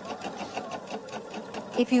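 Electric domestic sewing machine stitching a curved patchwork seam, its needle running at a steady, rapid, even rhythm.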